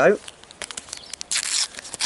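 A sticker packet's wrapper crinkling as it is handled and picked up: scattered small clicks, then a brief crinkle just past the middle.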